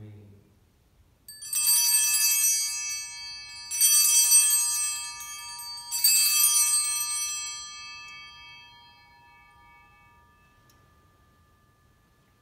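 Altar bells rung three times at the elevation of the chalice after the consecration, strikes a little over two seconds apart, each ringing on and the last fading slowly over several seconds.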